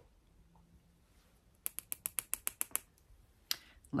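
A quick run of about ten light clicks from a small makeup brush tapping against an eyeshadow palette, with one more click near the end.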